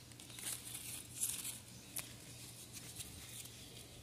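Faint, brief rustling of variegated ivy leaves handled by hand, with a single sharp tick about two seconds in.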